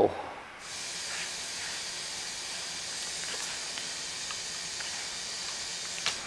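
A steady, even hiss of blowing air or gas from a plastic-welding tool worked on a plastic headlight tab, starting about half a second in.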